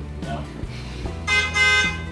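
A single short vehicle horn honk, lasting about half a second and starting just over a second in, over background music; it is taken as the moving truck announcing its arrival.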